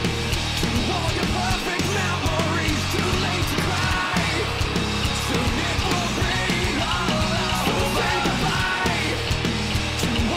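Rock band playing live at full volume: distorted electric guitars, bass and drums in a dense, steady wall of sound.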